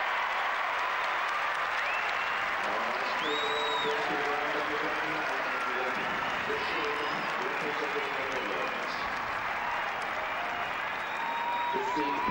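Large stadium crowd applauding steadily, with scattered shouts and cheers, for a clear show-jumping round with no penalties. A brief high whistle-like tone sounds about three seconds in.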